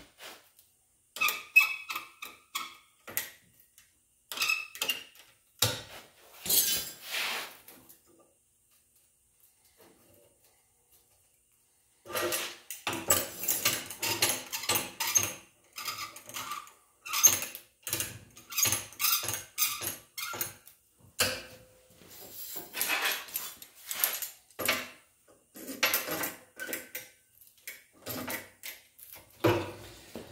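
Irregular clinks, knocks and rattles of steel tools and sheet steel handled on a steel bench while locking pliers are clamped onto angle iron. It goes almost silent for a few seconds about eight seconds in, then the clanking picks up again and runs busier.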